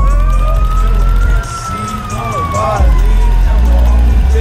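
A siren wailing: one slow sweep that rises for about a second, then falls for about two seconds and starts to rise again, over a heavy low rumble, with a few voices about two and a half seconds in.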